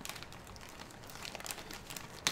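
Plastic pepperoni package crinkling as hands work it open, faint irregular crackles.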